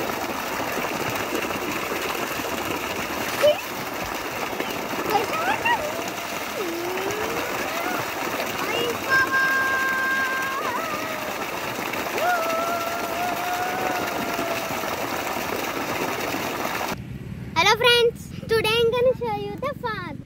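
Water gushing hard from an irrigation pipe outlet into a flooded rice paddy: a steady loud rush of water, with a child's voice calling out over it now and then. The rush cuts off about 17 seconds in and a child talks.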